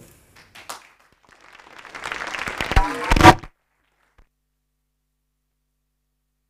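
Audience applauding, the clapping swelling over about two seconds, with two loud thumps and a brief spoken "uh" near the end; then all sound cuts off suddenly.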